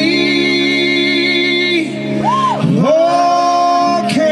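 Live band music with a male lead vocalist holding long sung notes: one held note for about two seconds, a quick swoop up and back down, then a higher held note near the end, over steady band accompaniment.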